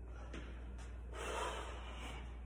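A lifter's single forceful breath, lasting under a second and starting about a second in, as he gets ready to bench press a heavy barbell.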